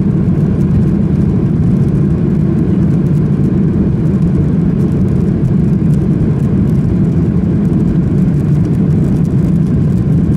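Steady low rumble inside the cabin of a Boeing 737-800 as it rolls along the runway after landing: its CFM56-7B jet engines running, together with rolling noise from the ground, at an even level.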